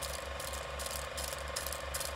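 Mechanical whirring and clatter with a steady low pulse about four times a second, a ratchet-and-gear sound effect.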